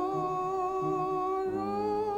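A woman singing a hymn solo into a microphone, holding one long note.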